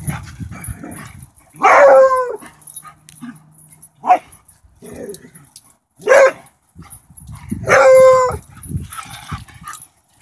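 Dogs barking during rough play: four loud, drawn-out barks about two seconds apart, the first and last the longest.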